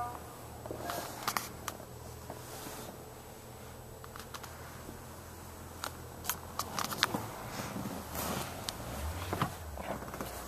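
Scattered clicks and rustles of a handheld camera being moved about inside an SUV's cabin, over a steady low hum.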